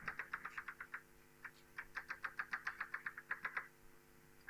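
Chalk tapping on a blackboard as a dashed line is drawn, a quick run of sharp taps, about nine a second. The taps pause briefly about a second in, then start again and stop near the end.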